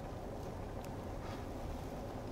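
Faint, steady interior hum of a Kia K5 rolling slowly, heard from inside the car's cabin.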